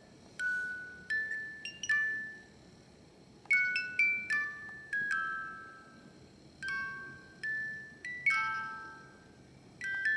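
A miniature Reuge cylinder music-box movement playing a tune: the pins of a turning brass cylinder pluck the steel comb teeth, giving single high, ringing notes in short phrases with brief pauses between them.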